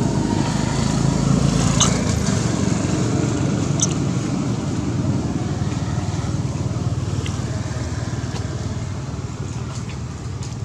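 A steady low rumbling noise, with a couple of faint clicks about two and four seconds in.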